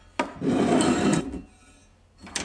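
Aluminium casting flask slid across a wooden workbench top: a short knock as it is moved, then about a second of scraping.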